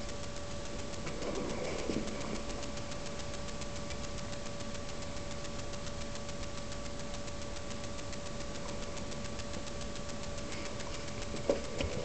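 Steady hiss with a constant high-pitched electronic hum, typical of a cheap camera's own microphone noise. Faint handling rustle comes about a second in, and a couple of sharp clicks come near the end.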